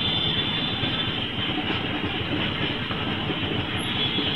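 Auto-rickshaw's small engine idling while the rickshaw stands still, a steady rapid clatter heard from the passenger seat.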